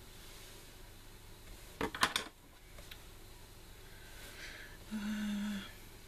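Quiet room with a quick cluster of light clicks about two seconds in, from small craft tools being handled over the card. Near the end a voice gives a short, steady hummed 'mm'.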